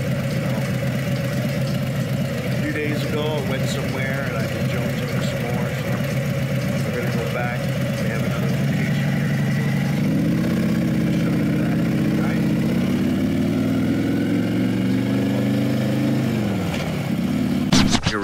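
Harley-Davidson Road Glide Special V-twin with a Bassani 2-into-1 Road Rage exhaust, idling steadily. About halfway through its pitch rises as the bike pulls away, holds, then falls near the end as it slows.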